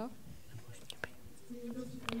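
A quiet hall with a faint, distant voice held on one low note near the end, and a couple of light clicks about a second in.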